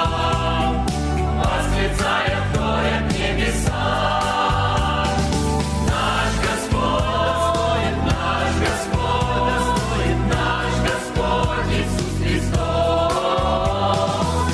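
Mixed choir of men and women singing a Russian-language worship song in harmony, over keyboard accompaniment with a steady bass.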